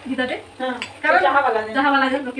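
A woman talking, with one short clink of steel kitchenware just under a second in.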